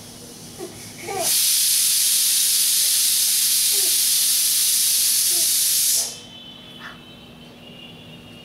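A loud, steady hiss that starts about a second in and cuts off sharply about five seconds later.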